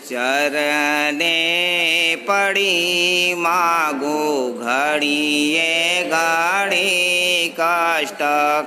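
A voice singing a Gujarati devotional hymn in long, sliding held notes, phrase after phrase with short breaks between them.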